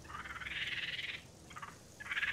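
An animal's high, pulsed trilling call lasting about a second, with a brief second burst near the end.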